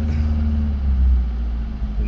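1974 Vauxhall Magnum 1800's 1.8-litre slant-four engine idling steadily moments after a first-time start, heard from inside the cabin.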